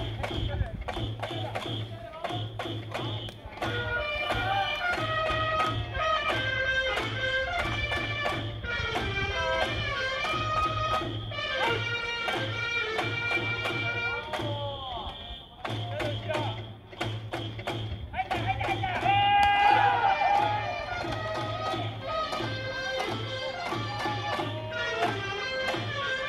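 A baseball cheering section's organised chant: a drum beating a steady rhythm under an electronic whistle and fans singing a cheer song, with a short break in the drumming about two-thirds of the way through.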